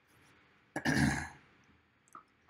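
A man clearing his throat once, a short rough burst just before the middle.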